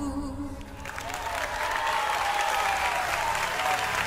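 The music dies away about half a second in and the audience of a live worship recording applauds, with a faint voice wavering over the clapping.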